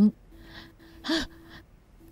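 A short, breathy laugh about a second in, set against a faint steady tone.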